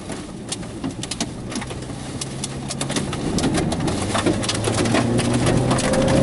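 Rain pelting the vehicle in many irregular sharp taps, over a steady low engine and road hum that sets in about a second in and grows slightly louder toward the end.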